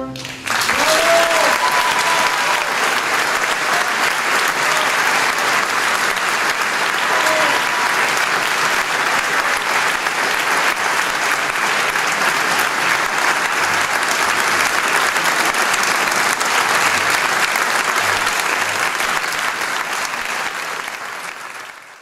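A theatre audience applauding, starting suddenly about half a second in and fading out near the end.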